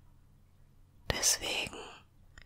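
A woman's brief whispered breath, opening with a small mouth click about a second in.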